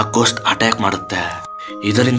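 Spoken narration over background music, with steady held tones in the music underneath; the voice pauses briefly about a second and a half in.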